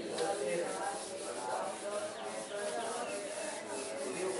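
Handheld whiteboard eraser rubbing across a whiteboard in repeated wiping strokes.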